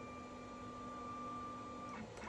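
Stepper motors of a C4NminiTK desktop CNC router jogging the spindle carriage along the X axis on its leadscrew, a faint steady whine that stops near the end.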